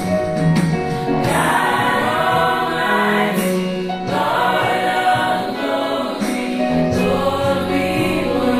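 Gospel choir singing held chords in several-part harmony.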